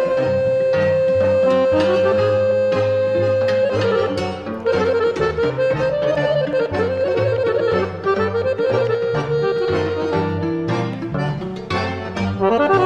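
Instrumental lăutărească music led by an accordion: a long held note, then quick ornamented runs and another held note near the end, over a steady alternating bass-and-chord accompaniment.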